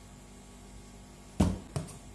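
A small plastic measuring cup set down on a metal counter: one sharp knock about one and a half seconds in, followed by a couple of lighter clicks.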